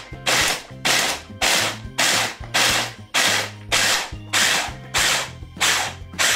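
Hand blender motor on a mini chopper bowl run in short pulses, about two bursts a second, its blades coarsely chopping carrot and onion.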